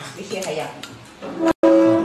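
Soft voice sounds, then an abrupt cut to a loud, steady held tone for the last half-second.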